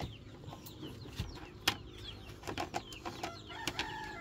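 Faint bird chirps over scattered sharp clicks and taps.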